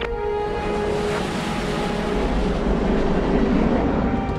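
Fighter jet engine noise, swelling about a second in and holding loud, with a deeper rumble building in the second half, over a steady background music drone.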